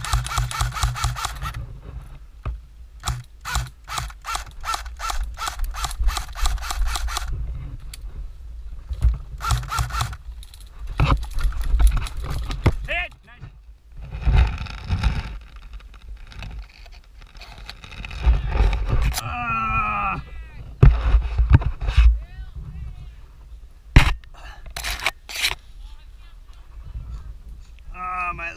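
Airsoft AK-style rifle firing: a rapid full-auto burst at the start, then a string of single shots about four a second. After that come irregular rustling and handling knocks, a short voice sound, and a few loud knocks near the end.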